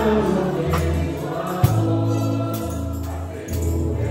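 Live church worship music: a group of voices singing a hymn together over an amplified band, with a sustained bass line changing note about once a second and a few sharp percussion hits.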